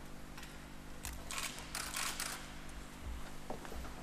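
Holy water being sprinkled from a metal aspergillum: a few short hissing swishes and spatters, bunched between about one and two and a half seconds in, with a couple of small clicks, over a faint steady hum.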